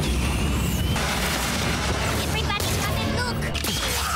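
Sci-fi battle soundtrack: booms and rapid blaster-like fire mixed over orchestral score, with brief voices in the fray.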